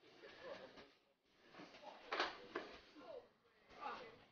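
A person dropping onto a hard shop floor: one sharp thump about two seconds in, the loudest sound here, followed by a smaller knock. Faint voices are heard around it.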